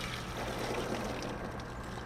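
Water from a garden hose running onto the overheated motor of an outdoor AC unit to cool it, heard as a soft, steady wash.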